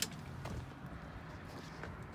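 A quiet, steady low background hum with a faint haze of noise, and a single light click right at the start.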